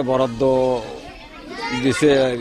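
Speech: an adult voice, then higher children's voices in the background.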